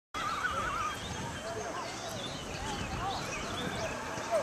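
A wavering, high animal call lasting most of a second at the start, followed by several shorter rising-and-falling calls over a steady background hiss.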